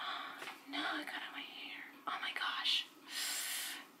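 A woman whispering to herself in short breathy phrases, with a long breathy exhale about three seconds in.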